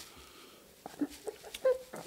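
A man sobbing, with short stifled whimpering cries about a second in and again near the end, a sign that he is overcome with emotion.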